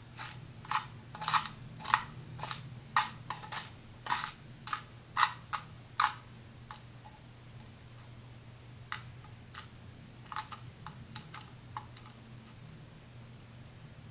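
Small sharp clicks of tweezers and tiny glass scraps tapping and clinking on glass. They come quick and irregular for about six seconds, then a few scattered clicks follow, over a steady low hum.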